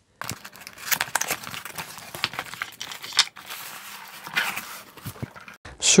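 Packaging being unpacked: irregular rustling and crinkling with many small clicks and taps as the box is opened and its contents taken out.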